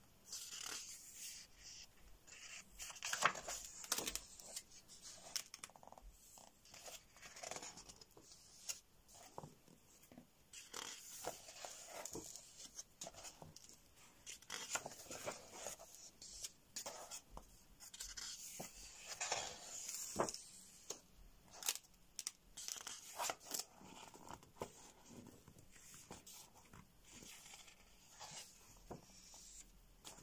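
Paper pages of a paperback coloring book being turned and pressed flat by hand: faint, irregular rustles and swishes of paper with occasional sharp flicks.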